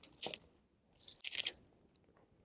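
Clear adhesive tape being wrapped and pressed around a squeezable plastic jam bottle and a wooden stick: two short crinkling crunches, the second louder.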